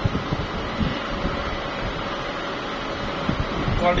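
OCA vacuum laminating machine for phone screens running with a steady, fan-like hum, with a few low thumps over it.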